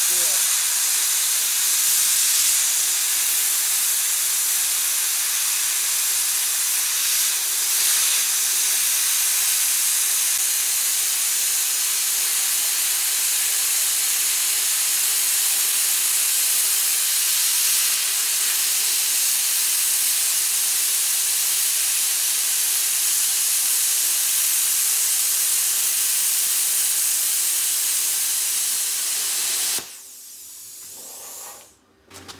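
Plasma cutter cutting through half-inch steel: a loud, steady hiss that goes on without a break and cuts off suddenly at the very end.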